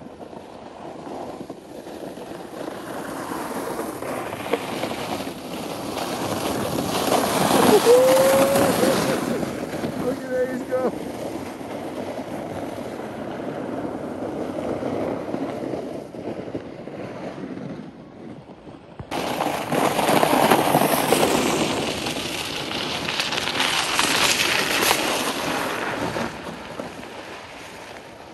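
Plastic sleds sliding down a packed, icy snow street: a rushing scrape that swells twice as riders come down. Children's voices and a short shout are mixed in.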